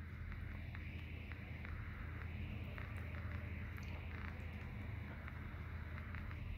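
Faint handling of a small plastic figurine as its base is pressed on, with a few light plastic clicks and rustles over a steady low hum.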